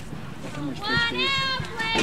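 Young players' high-pitched voices calling out and cheering, with drawn-out shouts from about a second in. A brief click at the start.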